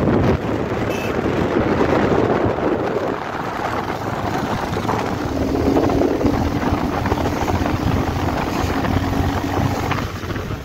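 Motorcycle on the move: wind rushing over the microphone with the engine running underneath, and a steady hum coming in about halfway through.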